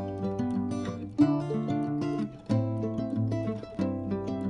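Background music: plucked acoustic-guitar-like notes over a steady bass line.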